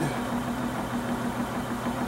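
Small electric motor spinning the rotor wheel of a homemade coil-and-magnet generator rig, running at a steady speed of about 390 RPM with an even hum.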